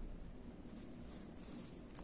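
Faint scratchy rustling of yarn as a crochet hook and hands work a crocheted strap through a loop.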